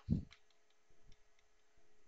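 Faint, irregular light ticks and taps of a pen input device as handwriting is drawn on a computer screen, after a short low bump at the start.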